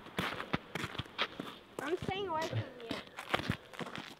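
Footsteps on snow-covered, newly frozen pond ice: a string of short, irregular crunches. A brief wavering vocal sound comes about two seconds in.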